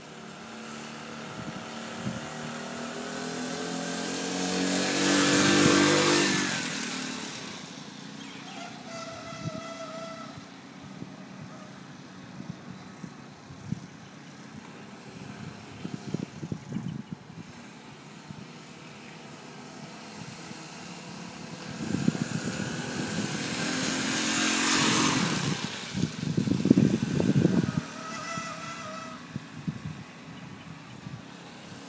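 Small four-stroke engine of a motorised bicycle riding past twice, about 5 seconds in and again near 24 seconds. Each time it grows louder as it approaches, then drops in pitch and fades as it goes by. A burst of rough, low noise follows just after the second pass.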